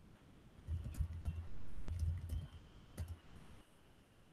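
Computer keyboard being typed on: a handful of scattered key clicks with dull low thumps, mostly in the first three seconds, as a password is entered at a terminal prompt.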